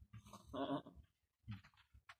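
A man's short strained moan about half a second in, then a fainter low sound near the end.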